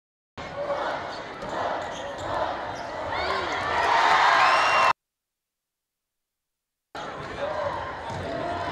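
Indoor volleyball match sound in a gym: ball and shoe noises on the court floor under a crowd that grows louder and cheers, peaking about four seconds in. The audio cuts out abruptly for about two seconds at a highlight-reel edit, then the match sound resumes.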